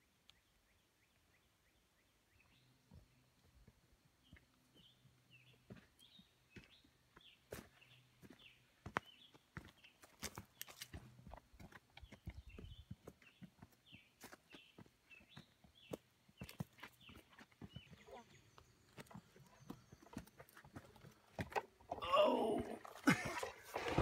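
Hikers' footsteps on a dirt trail strewn with dry leaves, a quick irregular patter that starts after about two seconds of near silence and grows louder as the walkers come near. A child's voice comes in near the end.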